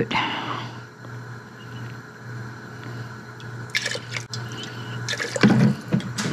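Fish sauce pouring from a glass bottle into a small metal measuring cup, then tipped into a stockpot of water, with a few light clinks of cup and bottle.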